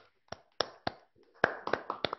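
Scattered hand claps, sparse and uneven at first and coming quicker in the second half, as a few listeners on a video call applaud the end of a talk.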